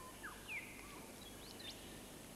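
Faint bird calls: a handful of short chirps, some falling and some quickly rising in pitch, over a steady low hiss.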